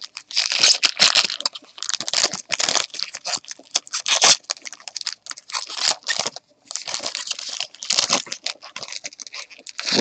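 Trading card packaging and a plastic card holder crinkling and rustling as they are handled, an irregular run of crackles with a couple of short pauses.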